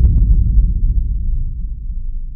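A deep boom sound effect that hits just before and dies away as a low rumble, fading over about two seconds.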